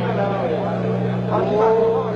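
Band soundcheck: a steady low drone from the stage instruments or amplification, with a voice calling out over it, loudest near the end.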